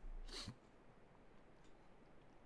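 A man's short breathy chuckle in the first half second, then near silence.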